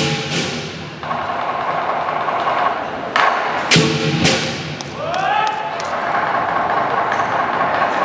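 Lion dance percussion: clashing hand cymbals and gong strikes over a drum, ringing on between strikes, with a loud cluster of strikes about three to four seconds in.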